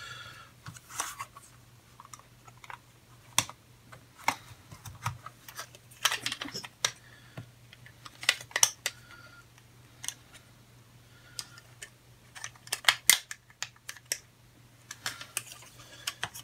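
Hard plastic snap-together kit parts clicking and rattling as they are handled and pressed onto the model's chassis. The clicks are irregular, with a few quick runs of sharper clicks.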